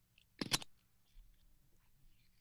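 A short burst of handling noise close to a webcam microphone: two or three quick knocks and a rustle about half a second in, then faint room tone.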